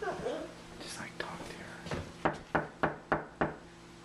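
Five quick knocks on a closed interior door, about three a second, from someone locked out on the other side.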